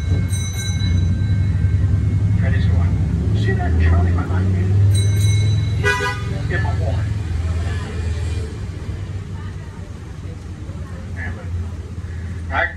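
The tour trolley's engine rumbles low as it rolls slowly along the street, easing off after about eight seconds. A bell rings in quick strikes near the start and again around five seconds in, and a brief toot comes about six seconds in.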